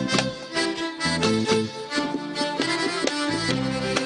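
Sudanese band music: a violin section and accordion playing a melody over a steady beat.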